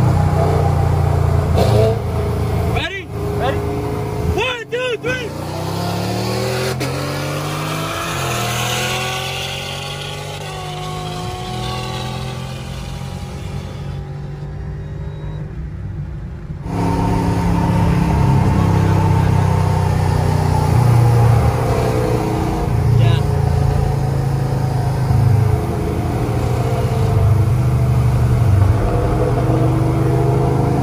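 Car engines revving and accelerating, the pitch climbing through the first dozen seconds. The engines settle into a louder, steadier drone for the second half.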